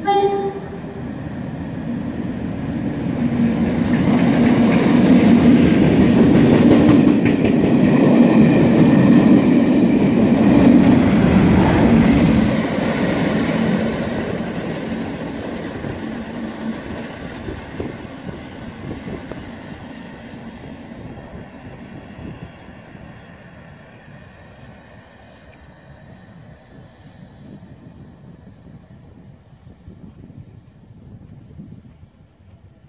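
Class 37 diesel locomotive with its English Electric V12 engine, running through with a test train in tow. The last note of its horn ends in the first second, then the engine and the clatter of the wheels build to their loudest from about four to twelve seconds in and fade away as the train draws off.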